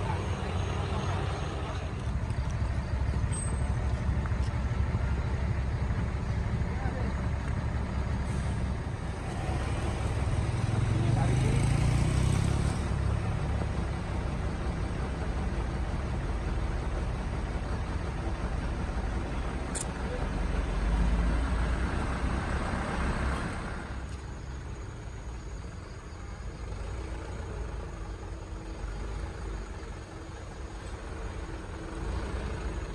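Heavy trucks' diesel engines running on a steep climb, swelling louder about ten seconds in and again about twenty seconds in, then dropping back. A short high hiss comes just before the second swell.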